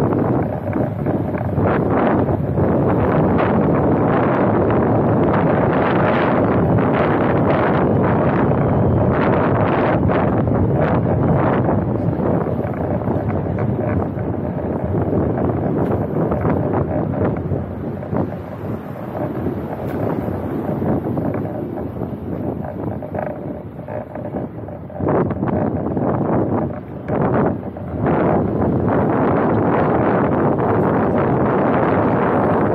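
Wind rushing over the microphone of a camera mounted on a moving car, with road noise beneath it. It eases somewhat about two-thirds of the way through and picks up again near the end.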